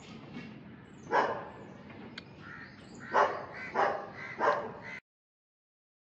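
A dog barking four short times in the background. The sound cuts off abruptly about five seconds in.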